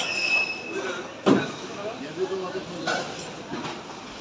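Busy market ambience: scattered background voices of shoppers and vendors. A short, high, steady squeal sounds right at the start, and a single sharp knock comes just over a second in.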